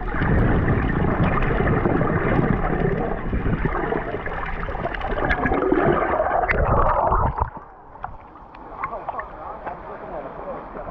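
Muffled rushing and gurgling water noise picked up by an underwater camera's microphone. It drops much quieter about seven and a half seconds in, leaving scattered small clicks and splashes.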